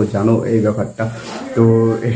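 A man talking, with a breathy hiss about a second in and a drawn-out vowel near the end.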